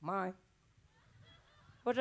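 A man's voice speaks one short word in a puppet character's voice, then near silence for about a second and a half before the voice comes back in near the end.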